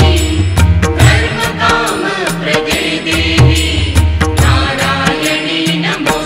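Devotional Hindu mantra to Kali, sung by a woman's voice in a flowing melodic chant. It runs over regular percussion strokes and a deep bass that comes and goes in stretches of about a second.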